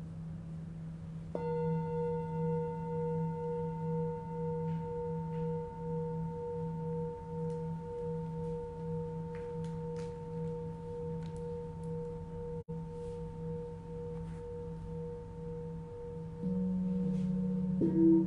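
Tibetan singing bowls ringing: a deep bowl's low hum with a slow wavering beat runs on, and about a second in another bowl is struck, ringing with a pulsing tone and thin higher overtones that slowly fade. Near the end a further bowl is struck with a lower, fuller tone.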